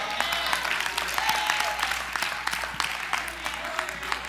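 A church congregation clapping and applauding, the dense patter of many hands, with a few voices calling out among it.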